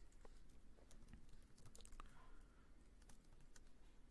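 Faint typing on a computer keyboard: scattered, irregular keystrokes as code is entered.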